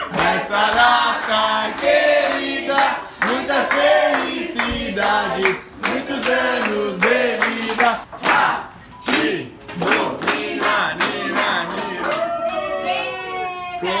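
A group of people singing a birthday song together, with hand clapping and cheering throughout.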